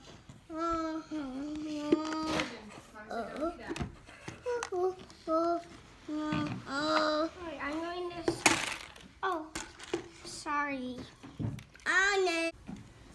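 A young child's voice babbling and chattering in short, sing-song phrases, with a few knocks and rustles of things being handled, the loudest about eight and a half seconds in.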